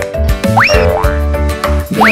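Bouncy children's-song backing music with a steady beat. A cartoon jump sound effect, a quick rising glide in pitch, comes about halfway through, and a second one starts at the very end.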